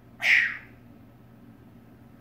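African grey parrot giving one short, loud call about a quarter-second in.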